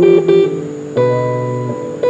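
Electric guitar played solo: a few quickly picked notes, then a chord struck about a second in that rings and slowly fades.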